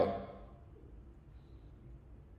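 Near silence: a man's last word trails off at the very start, then only faint room tone.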